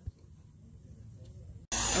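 Faint handling noise with a soft thump just after the start as the RC helicopter's loose canopy is worked back on. Near the end the sound jumps abruptly to loud, steady rushing noise with a low hum.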